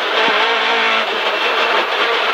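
Rally car engine running hard on a stage, heard from inside the cockpit, its note held fairly steady.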